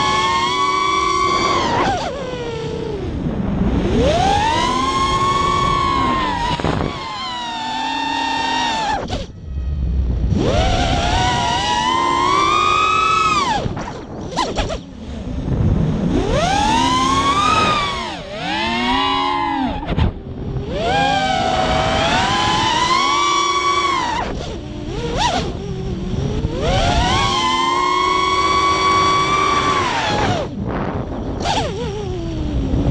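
FPV racing quadcopter's electric motors and propellers whining, the pitch swooping up and down again and again as the throttle changes, with a few brief drops in level.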